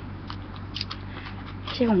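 A lull with a steady low electrical hum and a few faint small clicks, then a woman starts speaking near the end.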